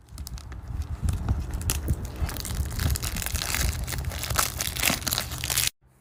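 Crinkling and crackling of packaging as a boxed blush palette is handled and unwrapped, a dense run of small crackles that stops suddenly near the end.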